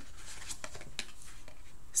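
Tarot cards being handled and turned over by hand, a few soft flicks and rustles of card stock.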